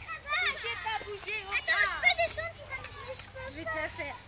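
Several children's high-pitched voices calling out and chattering over one another.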